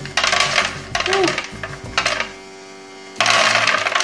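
Automatic programmable pet feeder dispensing dry kibble, its pellets clattering into the hard plastic tray in bursts. There is about a second of clatter at the start, a brief one around two seconds, and another that starts near the end. The feeder lets the food out a little at a time so that it does not jam.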